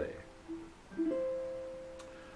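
Custom Lichty tenor ukulele with a sinker redwood top and Brazilian rosewood back and sides: a short plucked note about half a second in, then another plucked note about a second in that rings on and slowly fades.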